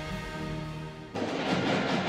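Sports broadcast bumper music: a held chord fading out, then cut off about a second in by the steady hubbub of a crowd in a gymnasium.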